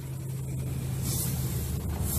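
Low, steady vehicle engine rumble, with a couple of faint clicks near the end.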